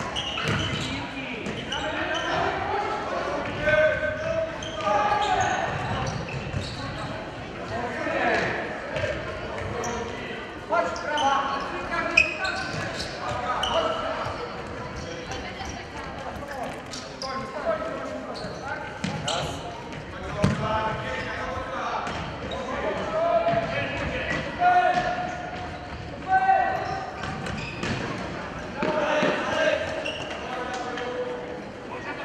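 Indoor futsal match echoing in a large sports hall: scattered shouts from players and spectators, with the thuds of the ball being kicked and bouncing on the hard court floor.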